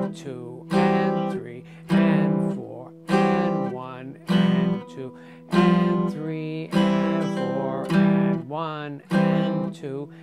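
Hollow-body archtop guitar played with a pick: chords struck about once a second, each ringing and fading before the next.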